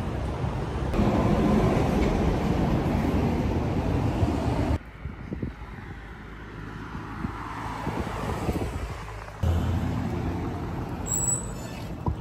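Road traffic noise from passing cars, a steady rushing that drops sharply about five seconds in and comes back up after nine seconds.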